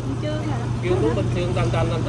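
Faint voices of people talking in the background over a steady low hum, which stops just after the end.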